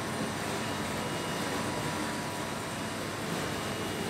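Steady hiss and hum of a supermarket's refrigerated display counters and ventilation, with a faint high steady tone over it.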